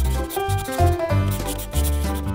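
A black marker rubbing across paper as a line is drawn, over background music with a melody and a pulsing bass beat.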